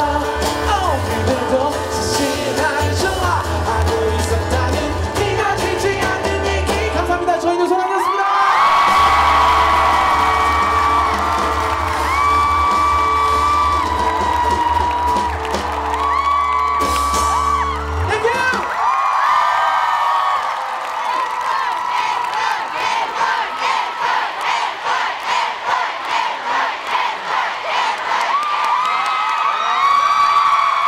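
Live pop-rock band playing with a heavy bass line under voices singing long held notes. About 18 seconds in, the band drops out and the crowd carries on singing along to a steady rhythmic pulse, with whoops.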